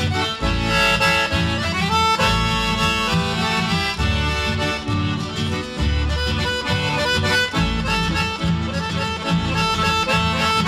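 Instrumental chamamé passage with no singing: an accordion carries the melody over a guitar and bass accompaniment.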